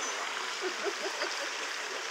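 Steady rushing of flowing water from the exhibit's water feature, with a few faint, short sounds rising in pitch in the first second and a half.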